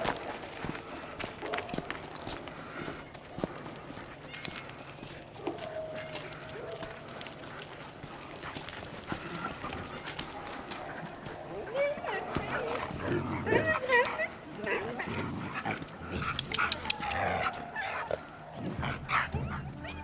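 Dogs yipping and whining excitedly in the second half, with a few sharper, louder barks, over the rolling noise and scattered clicks of a kick scooter on pavement.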